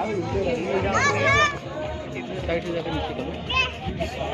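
People talking, with a child's high-pitched voice calling out about a second in and again shortly before the end.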